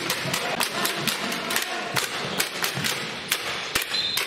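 Handball game play: a run of sharp knocks from the handball bouncing on the hall floor and being caught and passed, several a second at irregular intervals, over a steady background of players moving on court.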